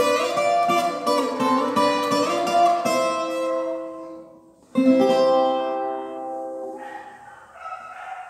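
Viola caipira, the Brazilian ten-string guitar with five double courses, playing a melodic passage of plucked notes in cururu rhythm, in C major. The phrase fades out about four and a half seconds in, then a new chord is struck and rings out, slowly dying away.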